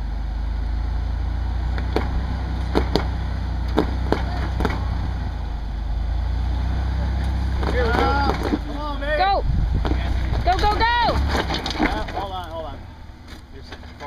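Toyota Tacoma engine pulling steadily at low speed under load as the truck crawls over a boulder, with a few sharp knocks a couple of seconds in. High excited voice calls come over it about eight seconds in. The engine drone drops away near the end.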